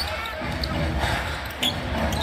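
A basketball dribbled on a hardwood arena court: a few sharp bounces over the steady murmur of a large indoor crowd.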